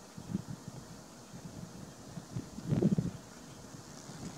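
Light wind buffeting the microphone in open grassland, with a low, uneven rumble and one brief louder low sound about three seconds in.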